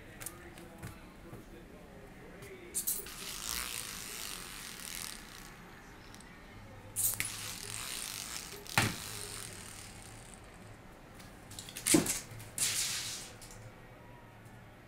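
A small fetch toy thrown for a kitten, clattering and skittering across a hard tiled floor: four sharp clicks, three of them followed by a second or two of scraping slide.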